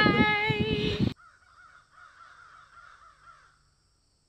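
A small group shouting a long, drawn-out "Viking!" together and laughing, cut off abruptly about a second in. Faint warbling chirps follow.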